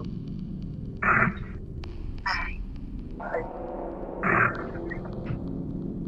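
Four short, indistinct voice-like utterances about a second apart, over a steady low electrical hum; they are presented as an EVP, an alleged spirit voice caught on the recording.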